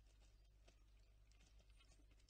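Faint, irregular clicks and taps, several a second, of Ezo squirrels cracking and picking through seeds on a wooden feeder tray.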